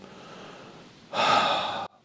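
A man drawing an audible breath, under a second long, starting about a second in and cutting off suddenly.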